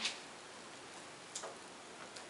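Quiet room tone, a steady faint hiss, with a single soft tick about one and a half seconds in.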